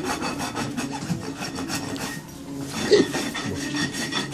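Farrier's rasp filing a horse's hoof in quick back-and-forth strokes, with a short pause a little past halfway.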